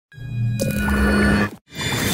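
Short intro logo sting: swelling sound-design music with sustained tones over a low drone and a rushing swell. It cuts off abruptly about a second and a half in, then a second hit starts just before the end.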